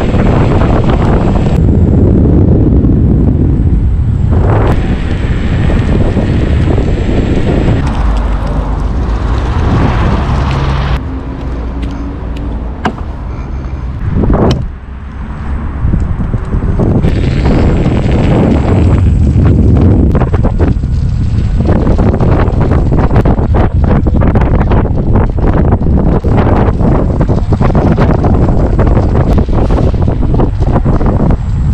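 Heavy wind buffeting on the microphone of a camera carried along on an electric unicycle being ridden at speed. The noise eases for a few seconds near the middle, then picks up again.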